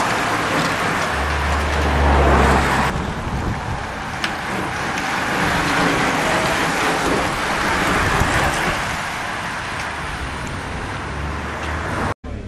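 Traffic noise of a bike race passing on a wet road: a steady rush of tyres and passing vehicles, with a low rumble in the first few seconds and again near the end. The sound changes abruptly about three seconds in.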